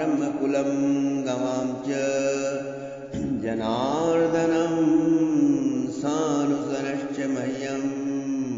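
A man chanting a Sanskrit verse in a slow, melodic recitation, holding long notes that glide up and down in pitch, with a brief pause about three seconds in.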